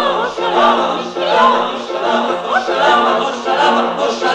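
Music: several voices singing together over a steady, pulsing low accompaniment, in a 1960s Polish cabaret song recording.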